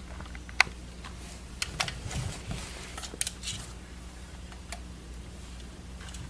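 Plastic LEGO pieces of a brick-built Jedi Interceptor model clicking and rattling lightly as a hand turns it. There are a few scattered sharp clicks, the sharpest about half a second in, with soft handling rustle in between, over a steady low hum.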